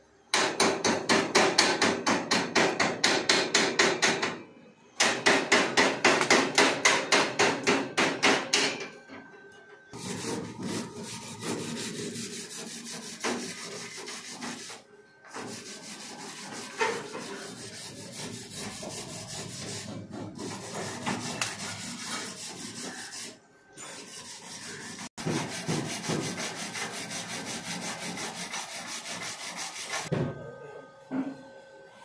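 Steel chipping hammer rapidly knocking slag off a fresh fillet weld on a steel T-joint, in two loud bursts of about four seconds each. A wire brush then scrubs the weld bead with a steady scraping and occasional knocks.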